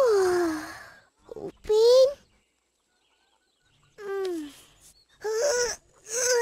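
A young boy's voice sighing and groaning as he wakes and stretches: a long falling sigh, a short rising moan, then after about two seconds of silence two more short groans.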